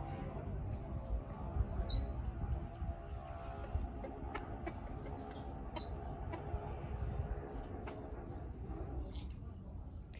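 A small bird chirping over and over, short high hooked chirps about twice a second, over a low background rumble.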